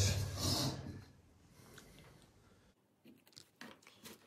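A metal measuring cup scooping dry soil from a galvanized bucket: a short gritty scrape in the first second, then a few faint clicks near the end.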